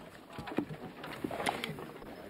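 A man groaning in pain from a freshly broken nose, with two sharp knocks.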